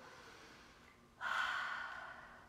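A woman's audible breath: a sudden, sharp exhale starting just over a second in and fading over about a second, after a moment of near quiet.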